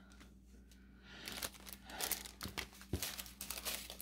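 Small plastic bags of diamond-painting drills crinkling as they are handled, starting about a second in as a quick, irregular run of crinkles.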